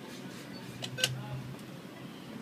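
A single short ATM keypad beep about a second in, as a key is pressed to confirm the PIN, followed by a brief low hum from the machine.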